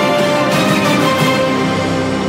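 Theme music for a programme's opening titles, loud and steady, with sustained notes over a faint regular beat.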